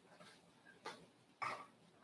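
Faint rustle of Bible pages being handled and turned: two short papery rustles about a second in and again half a second later, the second the louder.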